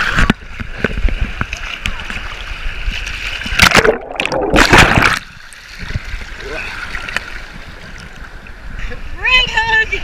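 Wave-pool water sloshing and splashing against a camera held at the surface, heard muffled through a waterproof case, with two big splashes a little under four and about five seconds in. Near the end a person's voice calls out.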